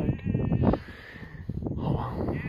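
Sheep bleating: one wavering bleat in the first second, with a low rumble on the microphone underneath it.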